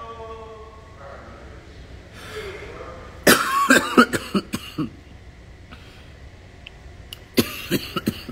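A man coughing: a quick run of short, sharp coughs about three seconds in, and a second short run near the end.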